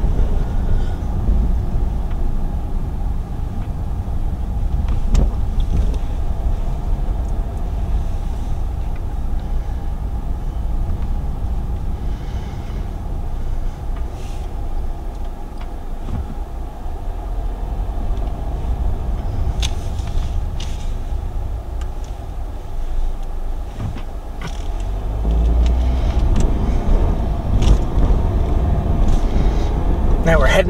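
Car cabin noise while driving: steady low road and engine rumble, with a few short sharp clicks, growing louder over the last few seconds.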